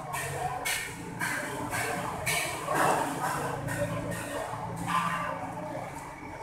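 Close-miked chewing and lip-smacking of a person eating noodles and rice by hand, with a short wet smack every half second or so.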